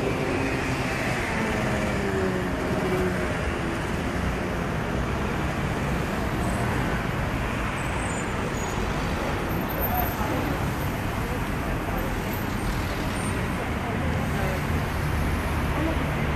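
Busy street traffic: a queue of cars idling and creeping forward, a steady rumble of engines and tyres.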